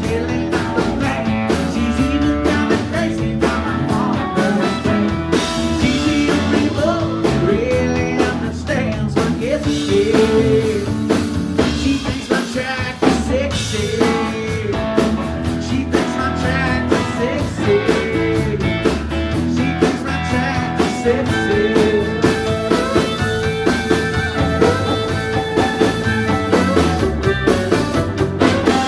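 Live country band playing: acoustic and electric guitars, bass and drums, with a sliding melody line that runs over the band throughout.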